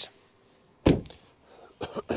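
A single loud thunk about a second in as the Aston Martin DB9's bonnet release is pulled and the bonnet pops up onto its safety catch, followed by a fainter click near the end.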